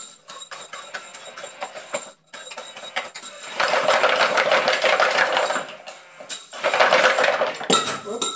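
Electric drill driving a wooden slinky escalator in uneven bursts, its motor and the wooden mechanism making a rapid mechanical rattle, with the metal slinky clinking on the steps. It runs quieter at first, then louder for two stretches in the second half with a short lull between, as the drill is hard to hold at low speed.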